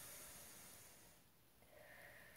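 Near silence, with a faint breath in about the first second.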